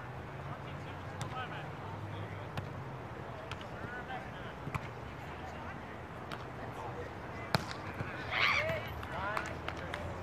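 Voices of people talking and calling out across an open park lawn, with a few sharp taps scattered through and one louder call shortly after a sharp tap near the end.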